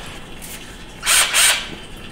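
Small cordless screwdriver triggered briefly twice, two short whirring bursts about a third of a second apart, starting about a second in.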